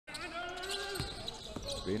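A basketball dribbled on a hardwood court: two bounces, about a second in and again half a second later. Before them a voice holds one steady note, and near the end a commentator starts talking.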